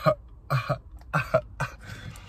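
A man laughing in a run of short, breathy bursts that grow weaker toward the end.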